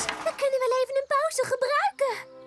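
Voices of cartoon characters making drawn-out vocal sounds with no clear words.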